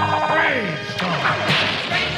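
Cartoon action sound effects over theme music: whistling glides falling in pitch, whooshes, and a sharp crack about a second in.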